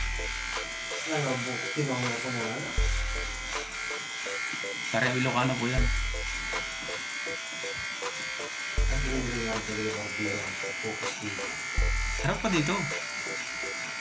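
Corded electric hair clipper buzzing steadily as it trims the hair at the nape of the neck. Background music with a singing voice and a deep bass note that changes about every three seconds plays over it.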